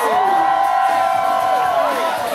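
A voice holding one long note through amplified music, sliding down in pitch near the end, while a crowd cheers and whoops.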